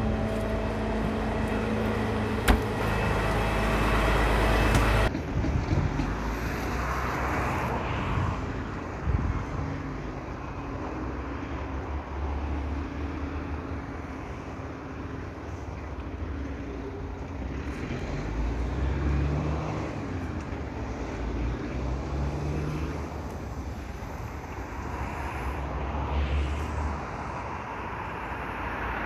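A heavy truck's diesel engine idles close by for the first five seconds or so. After a sudden cut, the sound becomes road traffic heard from a distance, with low engine noise rising and falling.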